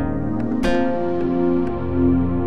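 Ambient instrumental music produced in FL Studio: held chords, with a single new note struck about two-thirds of a second in that rings and fades.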